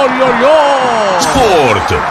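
Radio station goal jingle: stylised voices drawn out in long, sliding, falling tones.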